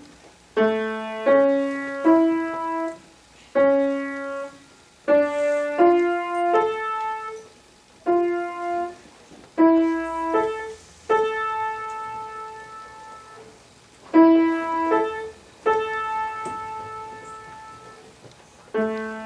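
Grand piano played solo: a slow, simple melody in short phrases of a few notes each, separated by brief pauses.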